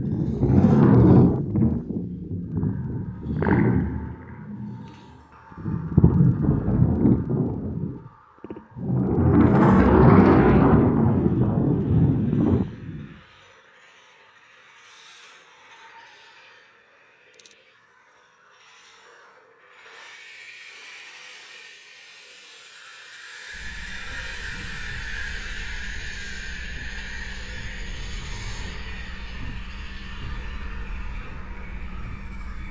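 Experimental noise music: several loud, distorted noise surges in the first half, then a quiet stretch, then a hissing high layer and, from about two-thirds of the way in, a steady low drone.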